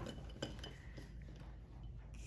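Plastic felt-tip markers clicking and clinking against each other and the rim of a glass jar as a hand rummages among them and draws one out: a few faint light clicks, the loudest about half a second in.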